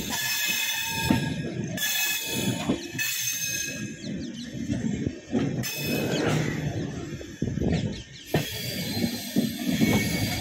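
Express train passenger coach running on the rails as it eases into a station, heard from the open door: the wheels rumble and clatter over the track and points. A high ringing squeal comes and goes at times.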